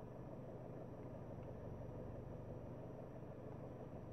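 Faint, steady low hum of a car cabin, with no other event standing out.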